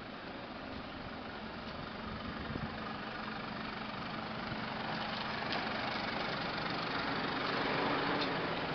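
Police van's engine idling with a steady hum that grows louder as the van is approached.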